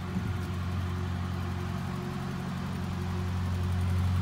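A motor engine running steadily with a low hum, growing a little louder near the end.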